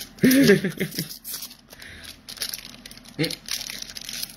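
Crinkling of Magic: The Gathering Kaldheim set booster pack foil wrappers being handled, in small irregular crackles. A short burst of voice near the start is the loudest sound, with another brief one about three seconds in.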